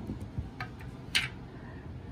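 A few light clicks and taps from parts of a DCT470 transmission's mechatronic valve body being handled and fitted together, the loudest about a second in.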